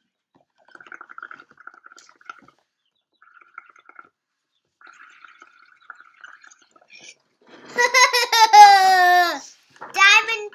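Soft gurgling of air blown through a straw into a pot of paint and washing-up liquid, in short spells. Near the end a child's voice sounds one loud, long note that falls in pitch, with a gargling edge, for about two seconds.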